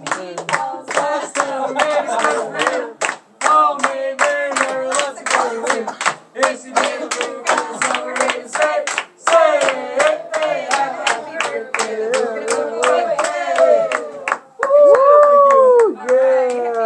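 A group singing a birthday song over steady, rhythmic hand clapping, about three claps a second. Near the end the clapping stops and the singers hold one loud final note.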